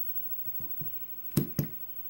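A small metal lock cylinder being picked up and handled by hand: a few faint ticks, then two sharp clicks about a quarter second apart a little past halfway.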